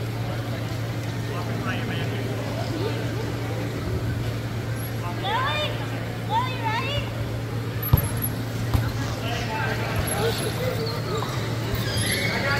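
Gymnasium ambience during power soccer play: a steady low hum with voices in the hall, a few high squeaks or calls a little past halfway, and a sharp knock about eight seconds in.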